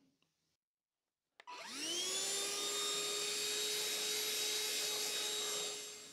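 A vacuum cleaner switched on about a second and a half in. Its motor whine rises quickly to a steady pitch as it sucks up small bits of black plastic, and it stops just before the end.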